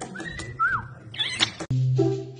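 A caique parrot whistling: a short glide, then a whistle that rises and falls in pitch, then a brief rough squawk. Music starts suddenly near the end.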